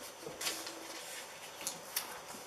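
A sheet of paper being handled and folded: a crinkly rustle about half a second in, then two short sharp clicks near the end as it is pressed flat on the table.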